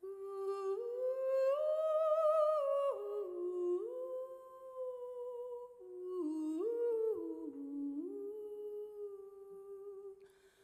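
A woman singing solo and unaccompanied: a slow phrase of held notes stepping up and down, with vibrato on the highest note about two seconds in.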